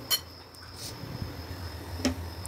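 A couple of light clinks of a metal spoon against a ceramic bowl as thick gram-flour (besan) pakora batter is mixed, over a faint steady hum.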